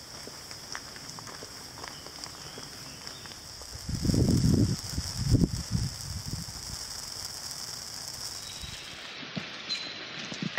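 Steady hiss of rain falling on forest foliage. A few louder, low rumbles on the microphone come about four to six seconds in.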